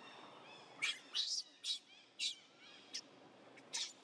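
About six short, sharp, high-pitched animal calls in quick succession, spread across a few seconds, over a faint steady background.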